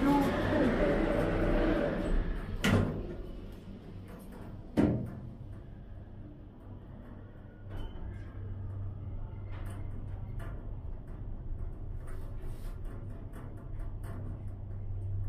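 Otis 2000 H hydraulic lift: the car doors slide shut with two knocks about three and five seconds in, then a steady low hum sets in as the car travels up, growing a little louder near the end.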